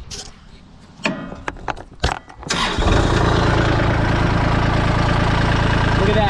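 Kubota L2501 compact tractor's three-cylinder diesel engine being started: the starter cranks unevenly for about a second and a half, the engine catches about two and a half seconds in, and it settles into a steady idle.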